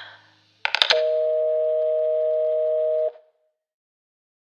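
A breath trails off, then a few quick clicks less than a second in, followed by a steady two-note telephone line tone that holds for about two seconds and cuts off suddenly.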